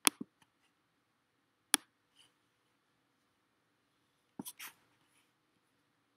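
A few sharp computer mouse clicks in a quiet room: a pair at the start, a single click a little under two seconds in, and three quick clicks about four and a half seconds in, as a clip is selected and dragged in an editing timeline.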